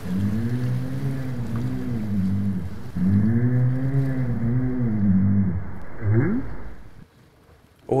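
North Atlantic right whale calls: two long calls with harmonics, each arching up and down in pitch, followed about six seconds in by a short rising up-call.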